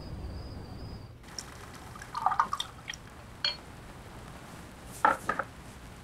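Light clinks of a wine glass and a short liquid sound, as of red wine moving in the glass. A few clinks come between about one and three and a half seconds in, and another pair near the end. String music fades out about a second in.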